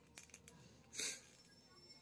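Faint clicks of a small plastic action figure's joints being moved by hand, with a short breathy hiss about a second in.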